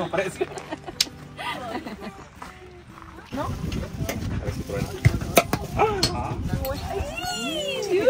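Several people talking and laughing close by in casual conversation, with a low rumble coming in about three seconds in.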